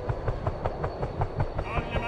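Helicopter heard from inside the cabin with the door open: the rotor beats about five times a second over a steady low rumble, with a thin, steady engine whine on top.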